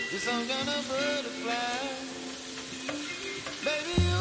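Lamb chops sizzling in hot oil in a cast-iron skillet, turned with a plastic spatula, under background music with a singing voice.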